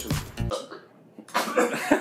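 Background music that cuts off abruptly about half a second in. After a brief pause a man starts coughing and sputtering, doubled over as if bringing up the drink he has gulped down.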